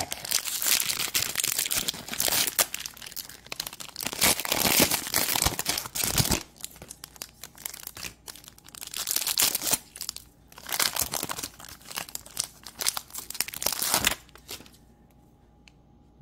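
Foil wrapper of a Panini Prizm basketball card pack being torn open and crinkled by hand, in irregular bursts of crackling.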